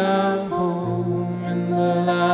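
Slow, gentle chant-like song: a woman's voice sings over acoustic guitar and piano, with sustained low notes underneath.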